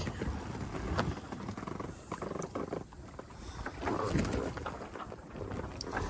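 A low rumble with scattered knocks and creaks from a racing sailboat rocking in swell on a near-windless sea, its sail and rig shaking, with handling noise from a camera being carried along the deck.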